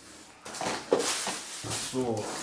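Handling noise of packing material and fireworks boxes in a cardboard carton: plastic packing bags rustling and items shifting as a hand rummages inside, starting about half a second in.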